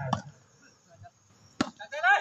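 A single sharp smack of a hand striking a volleyball, about one and a half seconds in, with faint shouts from the court just after it.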